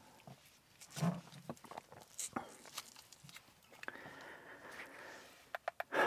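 Quiet clicks and light handling noise of FPV drone batteries being picked up and fitted, ending in a quick run of sharp clicks. A faint high tone lasts about a second and a half, starting about four seconds in.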